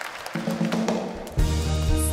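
Worship band starting a song: a sustained chord comes in, then about a second and a half in the full band enters with bass and drums.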